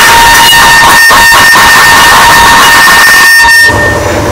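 Deliberately over-amplified 'earrape' sound effect: a steady high tone swamped in heavy clipping distortion at full volume. It starts abruptly and eases slightly just before the end.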